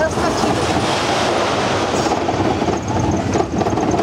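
Small steel roller coaster car rolling along its track at the start of the ride: a steady rumble of wheels on steel rails.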